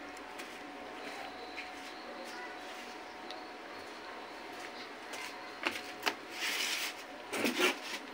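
Quiet room with a faint steady hum, then a couple of knocks and about a second of scratchy rustling from a wad of steel wool being pulled apart by hand, with another short rustle near the end.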